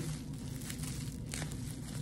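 Plastic bubble wrap crinkling and rustling with soft, irregular crackles as hands press and fold it around an object.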